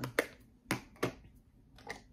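Four short, light clicks spread over two seconds: makeup brush handles knocking against each other and the holder cup as a brush is pulled out of it.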